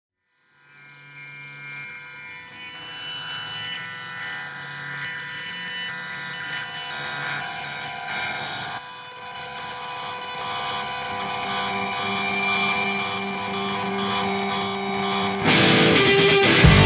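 Opening of a rock song: effected, distorted guitar playing sustained notes that slowly build in loudness. Shortly before the end the full band comes in suddenly and loudly.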